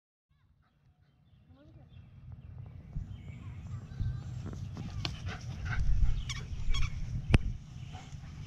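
Dogs giving short calls while playing, over a low wind rumble on the microphone that rises from near silence over the first two seconds. A sharp click about seven seconds in is the loudest sound.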